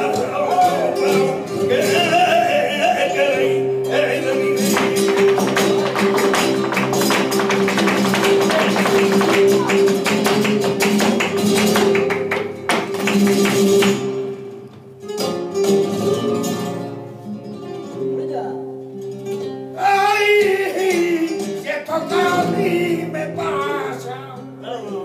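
Live flamenco por seguiriyas: two flamenco guitars playing with a cante singer, whose voice is heard at the start and again near the end. In the middle is a long, loud passage of rapid percussive strokes that stops suddenly after about fourteen seconds, followed by a quieter stretch.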